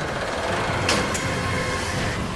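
Sandstorm sound effect: a steady rush of wind and blowing sand, with a sharp gust about a second in.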